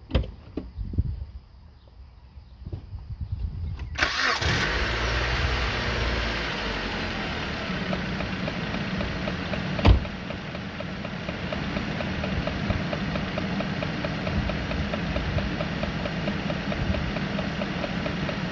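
A few faint thumps, then the 2008 Chrysler Sebring's 2.4-litre four-cylinder engine starts about four seconds in and settles to a steady idle. A single sharp knock comes about ten seconds in.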